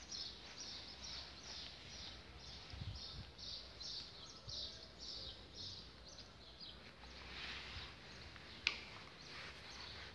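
Rapid high bird-like chirps repeating about two or three times a second, fading after about seven seconds. Near the end a rustle and a single sharp click stand out; the click is the loudest sound.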